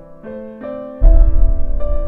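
Soundtrack music: a slow, gentle piano melody of separate notes, with a deep low rumble coming in suddenly about a second in and holding under the piano as the loudest part.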